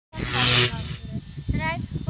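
A loud hiss lasting about half a second, followed about a second later by a boy's voice, briefly.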